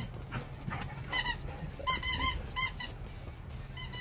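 A rubber squeaky pet toy being squeezed: a string of short, high squeaks, about six or seven over three seconds.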